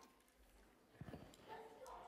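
Near silence, then a few faint, short, low knocks from about a second in.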